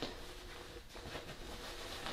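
Faint rustling of linen bedding as a rolled duvet and insert are pushed by hand into the opening of a duvet cover.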